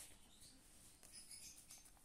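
Near silence: room tone with faint, light rustling.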